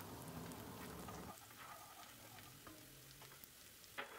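Faint sizzling of chopped onions and garlic frying in olive oil in a pot, with a wooden spoon stirring through them. The sizzle grows fainter about a second and a half in.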